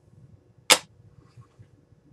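A small clear plastic container set down on a hard countertop: one sharp click a little under a second in.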